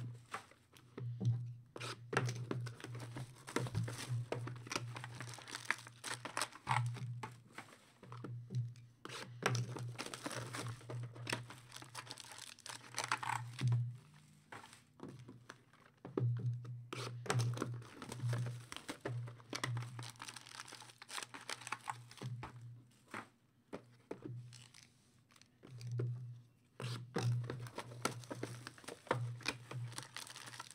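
Trading-card packs being torn open and their wrappers crinkled and crumpled by hand, in irregular rustling bursts, with cards and packs handled on a table. A low hum comes and goes underneath.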